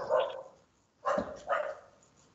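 A dog barking in two short bouts about a second apart, coming over a meeting participant's microphone.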